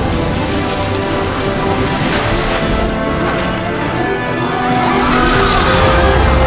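Orchestral film score with held chords, mixed with action sound effects: a noisy rush, and from about five seconds in a wavering screech like tyres skidding.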